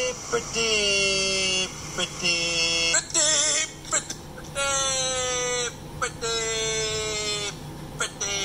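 Singing voice in long held notes with short breaks between them, one note wavering in vibrato a little past three seconds in.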